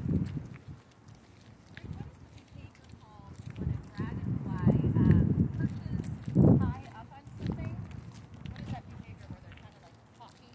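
Footsteps on asphalt and muffled voices, with a small bird giving a quick series of high chirps in the middle.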